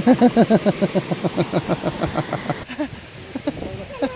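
A woman laughing hard: a long run of quick, rhythmic laughs, each dropping in pitch, that weaken and die away near the end.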